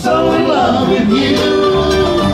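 Live bluegrass band playing with harmony singing: sustained sung notes over acoustic guitar, mandolin, dobro and electric bass.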